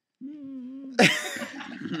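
A man's muffled, mumbled voice through a mouthful of marshmallows, a held, slightly wavering hum as he tries to say "chubby bunny", then a sudden loud outburst about a second in.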